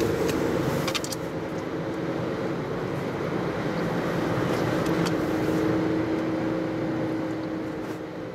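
Steady engine and tyre noise of a car being driven, heard from inside the cabin, with a low hum and a couple of faint clicks.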